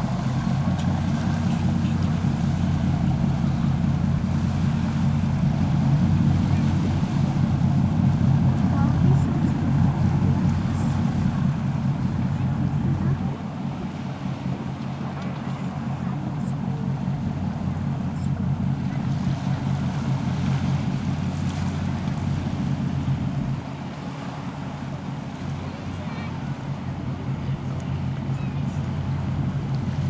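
The engine of a glass-bottom tour boat running offshore: a steady low hum that drops a little in level about a third of the way in and again after about two-thirds.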